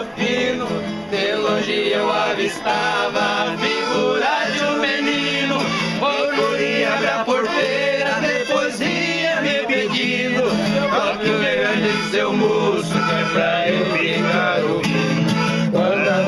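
Viola caipira and guitar played together with a small accordion, while a man sings a sertanejo song in Portuguese.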